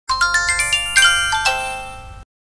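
A short chime jingle of bell-like tones. It is a quick rising run of about six notes, then a fuller chord about a second in and two lower notes, all ringing and slowly fading.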